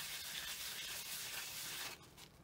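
Perfume sprayed from a bottle: a steady hiss lasting about two seconds that cuts off abruptly.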